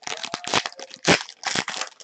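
Foil wrapper of a trading-card pack crinkling and tearing in the hands as it is opened: a rapid run of irregular crackles.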